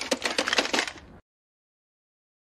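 A plastic clock radio being smashed by a fist: crunching and clattering of breaking plastic and loose parts in a quick run of blows. It cuts off suddenly a little over a second in.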